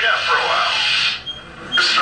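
A voice over an aircraft intercom with loud rushing engine and wind noise, from an in-cockpit aerobatic flight video played back through room speakers. The sound drops out briefly a little past a second in, between phrases.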